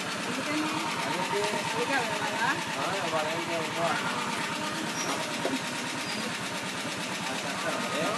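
Auto-rickshaw engine idling with a steady, rapid beat, with voices talking faintly over it.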